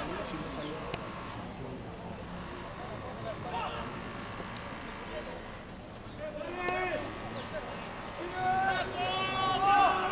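Shouted voices from players at a rugby scrum over low background chatter. The shouting starts after about six seconds and is loudest in the last second or two.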